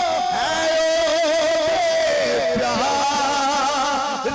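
A man singing a naat, an Islamic devotional praise song, into a microphone. He draws out long, ornamented notes that waver and glide.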